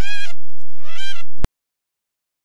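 Two short, loud honks about a second apart, each rising and then falling in pitch. About a second and a half in, the sound cuts off with a click and leaves dead silence.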